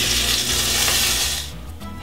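Hot oil sizzling as oat-coated herring fries in a pan, cutting off suddenly about one and a half seconds in. Background music runs underneath.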